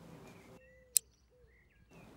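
Faint birdsong in a quiet garden: short, thin calls. One sharp click sounds about a second in and is the loudest thing.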